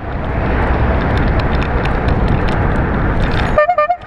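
Wind and road noise on a camera riding on a bicycle, with faint high ticks. Just before the end there is a short car-horn toot.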